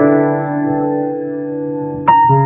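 Solo piano music: a chord struck at the start and held, slowly fading.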